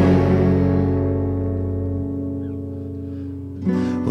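Live rock band's guitars and bass letting a chord ring out and slowly fade, then striking up again near the end.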